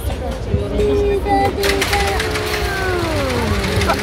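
A voice holding a long drawn-out note, then sliding slowly down in pitch near the end, over a steady low background rumble.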